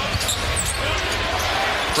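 Basketball being dribbled on a hardwood court, against a steady roar of arena crowd noise.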